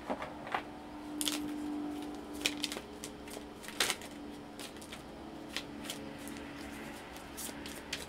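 A deck of tarot cards being shuffled and handled by hand: irregular soft snaps and flicks of card stock at uneven intervals, over a faint steady low hum.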